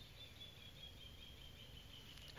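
Near silence: faint room tone with a thin, high, faint tone that fades away.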